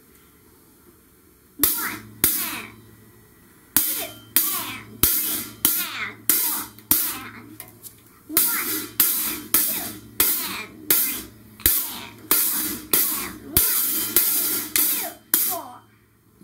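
Closed hi-hat struck with a single drumstick by a beginner child, about two hits a second and slightly uneven. The hits start about a second and a half in, with a short break about a second later.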